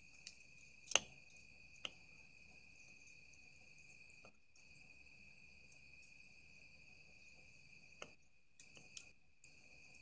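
Faint, steady high-pitched trill of night insects such as crickets, with a few soft clicks: three in the first two seconds and one about eight seconds in.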